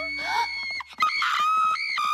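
A cartoon three-headed dog giving a high-pitched, drawn-out happy whine while having its belly rubbed: two long held notes, the second starting just after a brief break about a second in.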